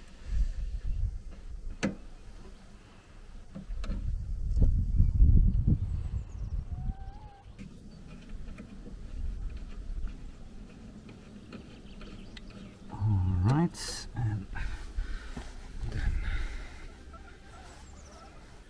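Hands working at the fuse box and wiring in a van's engine bay: small clicks and handling noise with patches of low rumble, loudest about four to six seconds in. A short rising grunt-like vocal sound comes about thirteen seconds in.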